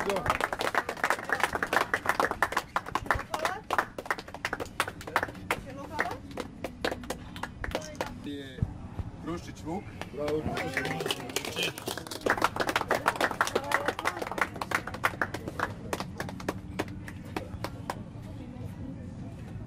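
Crowd applauding, with voices talking and calling out over the clapping; the applause thins out near the end.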